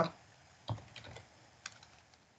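A few faint keystrokes on a computer keyboard: one tap, a couple more about a second in, and a quick run of clicks near the end.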